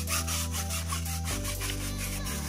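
A stiff bristle brush scrubbing a rubber tire, in repeated short strokes, over background music with a steady bass line.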